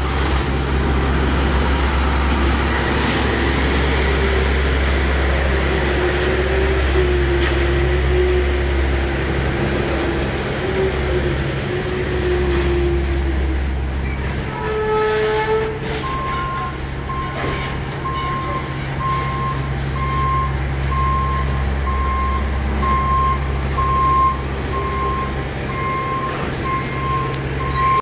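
Diesel delivery truck engine running steadily at low speed; about halfway through, a truck's reversing alarm starts beeping at one steady pitch, roughly one beep a second, over the engine.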